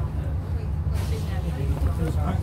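Eastern Coach Works Bristol VR double-decker's diesel engine running with a steady low drone, heard from inside the upper deck. A brief hiss comes about a second in.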